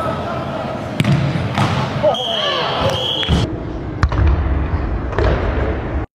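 Indoor soccer play echoing in a large hall: sharp thuds of the ball being kicked, players shouting, and a referee's whistle blown twice in quick succession near the middle.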